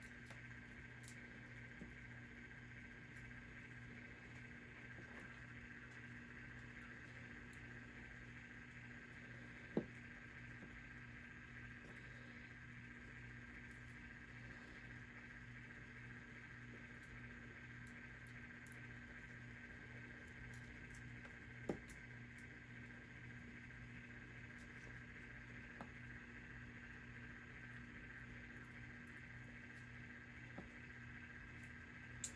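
Quiet, steady electric-motor hum of a tumbler cup turner slowly rotating a resin-coated cup, with a couple of soft clicks about a third and two thirds of the way through.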